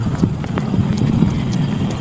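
A handful of light, irregular taps of fingers typing on a phone's touchscreen keyboard, over a steady low rumble.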